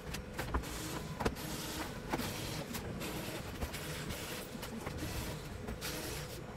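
Cordless electric screwdriver backing screws out of a flat-screen TV's back cover, its small motor running in short bursts, with light clicks and knocks from the screws and the plastic cover between them.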